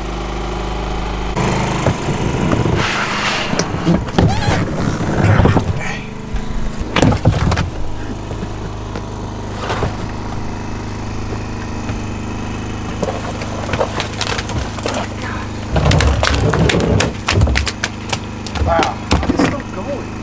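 A small engine running steadily under a string of knocks, thumps and scrapes as freshly shot carp and catfish are handled and tipped out of a plastic trash can.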